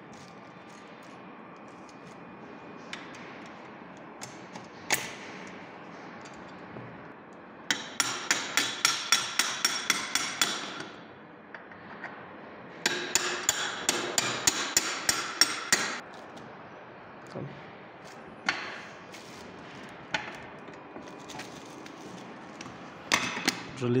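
Rapid metal-on-metal taps on the steel suspension mechanism of a tractor seat, in two runs of about three seconds each at roughly five strikes a second, each strike ringing briefly. A few single knocks come between them.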